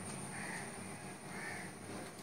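Two faint, rough bird calls about a second apart, over quiet room tone.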